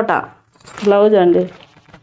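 A woman speaking in short bits, with a brief high metallic jingle about half a second in, from the bangles on her wrists as she handles the sarees.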